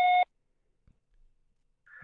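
Voicemail beep over a phone call: a short steady tone with overtones that cuts off a quarter second in, signalling that recording of the message has begun.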